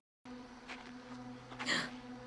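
Faint, steady buzzing hum at a few fixed low pitches, with a short hiss about three-quarters of the way through.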